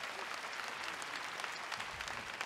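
A large audience applauding steadily, a dense patter of many hands clapping with no voices over it.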